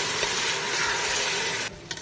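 Water poured into a hot pot of frying textured soy and onion, hissing and sizzling loudly as it hits the hot oil. The hiss stops suddenly near the end, leaving a quieter sizzle.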